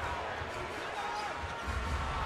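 Arena crowd noise from a basketball game, with a basketball being dribbled on the hardwood court; low thuds of the bounces are strongest near the end.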